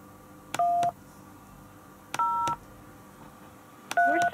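Telephone keypad touch tones (DTMF) from the Skype dial pad, as a phone number is entered into an automated phone menu: two short dual-tone key beeps about a second and a half apart, each a different key, with a third starting near the end. A faint steady line hum runs under them.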